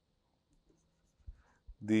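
Faint scratches and light taps of a digital pen writing on a tablet screen, after about a second of near quiet. A man's voice starts a word near the end and is the loudest sound.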